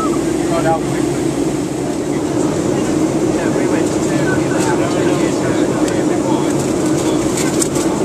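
Steady roar of an airliner cabin in flight, with indistinct passenger voices under it.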